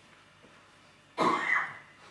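A man coughs once, briefly, behind his hand, about a second in.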